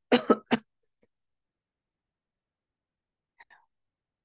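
A woman coughing and clearing her throat in three quick, hoarse bursts, her voice strained from losing it. Near the end come two faint short sounds as she drinks from a mug.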